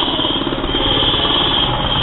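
A steady, rapid, machine-like rattle, loud and even, with a thin high whine over it.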